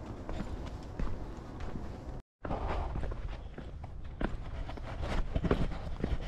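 Footsteps crunching on a rocky, gravelly trail at walking pace, over a steady low rumble. The sound drops out completely for a moment about two seconds in.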